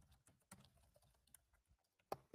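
Faint computer keyboard typing: a scattered run of soft key clicks.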